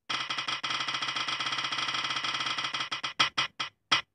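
Ticking of an on-screen spin-the-wheel app as the wheel turns: a fast, steady run of clicks that thins out about three seconds in to a few separate clicks, spaced wider and wider as the wheel slows down.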